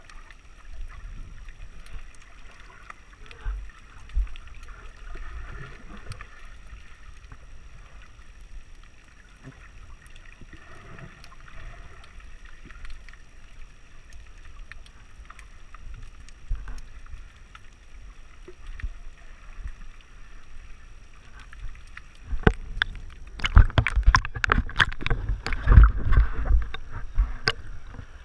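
Muffled underwater sound picked up through a GoPro's waterproof housing: a faint, low rumble of moving water. In the last few seconds it gives way to loud, choppy splashing and sloshing as the camera comes up through the water's surface.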